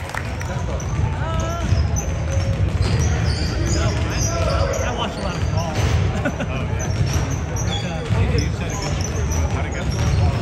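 A basketball being dribbled and bouncing on a hardwood gym floor during play, with sneakers squeaking in short high chirps on the court.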